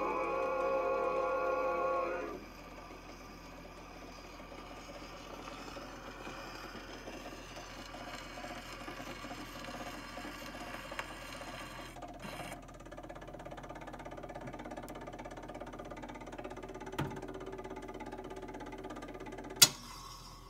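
Edison Diamond Disc phonograph playing acoustically: a male chorus holds a final sung chord that stops about two seconds in, ending the record. The reproducer then runs on in the run-out with steady surface hiss and rumble from the spinning disc, and a sharp click comes near the end.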